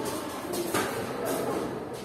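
Children moving about a classroom: shuffling and faint voices, with one sharp knock about three-quarters of a second in.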